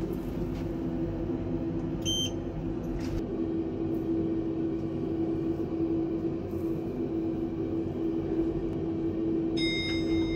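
Passenger lift car running, a steady hum with low rumble. A short electronic beep sounds about two seconds in, and a ringing arrival chime starts near the end.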